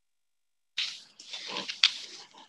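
Close-miked rustling and handling noise at a desk microphone, starting suddenly about three-quarters of a second in, with a sharp click near the end, as papers are moved on the desk.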